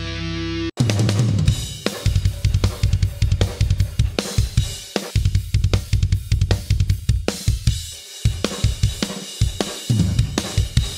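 Metal drum mix played back: a held pitched note cuts off suddenly under a second in, then a fast pattern of rapid kick drum strokes with snare and cymbals, broken by a few short stops.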